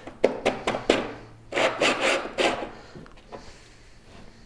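Handling sounds from a woodturning sharpening jig being loosened and the gouge in it moved about: several sharp knocks and clicks, then a stretch of scraping and rubbing against the wooden board under the jig, dying down near the end.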